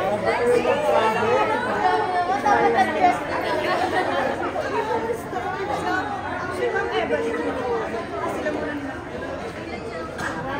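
A crowd of people chattering and talking over one another in a large, echoing room, loudest in the first few seconds and easing a little toward the end.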